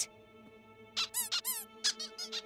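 Squeaky toy squeaked several times in quick succession as the cat bites it, each squeak rising and falling in pitch, starting about a second in. Soft sustained background music runs underneath.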